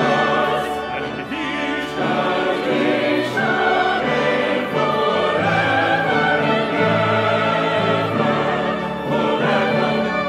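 A church choir singing in parts, accompanied by a brass ensemble and organ.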